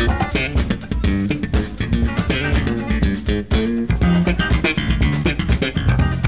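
Jazz-funk band playing live, heard from a cassette recording of the gig: a busy bass guitar line and electric guitar to the fore over a drum kit.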